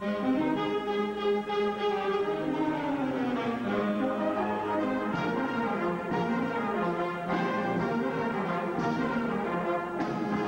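A large wind band of brass and woodwinds strikes up suddenly with a loud chord, then plays on in sustained full harmony, with a falling passage a few seconds in.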